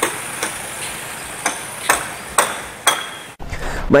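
Wooden protective boards knocking as they are taken down from a shop doorway after the flood: about five sharp knocks and taps spread over three seconds, over a faint steady high tone.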